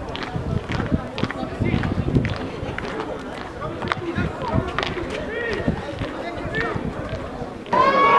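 Pitch-side sound of a rugby match: scattered shouts and calls from players with short knocks and thuds of play. A louder burst of voices starts just before the end.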